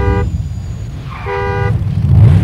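A car horn honking twice, a brief blast at the start and a longer one past the middle, over a low vehicle engine rumble.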